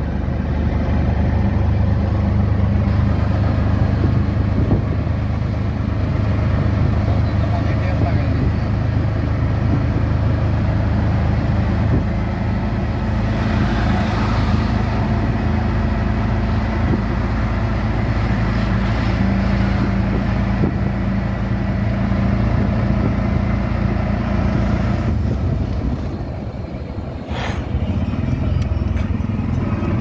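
Engine of a CNG auto-rickshaw running steadily under way, heard from inside the open passenger cabin with road noise. It eases off briefly near the end, with one sharp knock just after.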